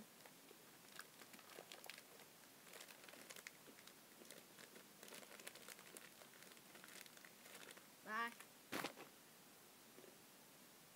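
A shiny plastic snack bag crinkling faintly in the hands, in scattered small rustles. About eight seconds in comes a brief vocal sound, followed at once by a single louder, sharp noise.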